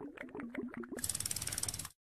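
Sound effects of an animated end card. A run of clicks with short low blips comes first, then fast, even ticking at about fifteen ticks a second for almost a second, stopping shortly before the end.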